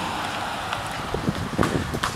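Wind noise on a phone's microphone over outdoor street noise, with faint voices in the background in the second half.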